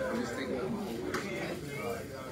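Indistinct talk of several people at once, overlapping conversations at the tables of a crowded room.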